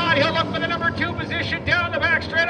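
A man's voice calling the race action, as a track announcer does, with music underneath.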